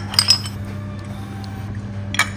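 Ceramic soup spoon clinking against a porcelain bowl twice, close together, as soup is ladled in, over background music.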